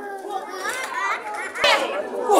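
Spectators, children among them, shouting and calling out at a live wrestling show, with one sharp smack about one and a half seconds in.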